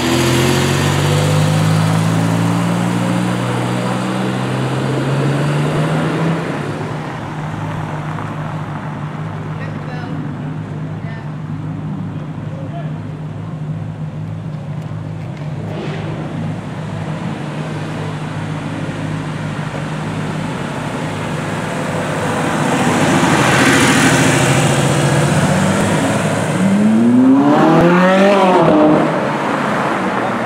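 Sports car engines as cars drive off one after another. An engine accelerates away at the start with its pitch rising, a steady engine drone runs through the middle, a car passes, and near the end an engine revs hard with its pitch climbing quickly.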